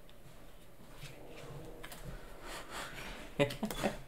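Faint room noise with a few soft taps and rustles, then a person's short laugh near the end.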